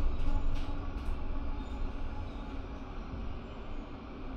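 Low, steady rumble of a Class 450 diesel multiple unit's engine as the train shunts, fading gradually.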